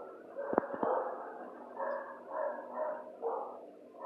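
A dog in a kennel giving a run of short barks, about two a second, in the second half, after two sharp clicks about half a second in.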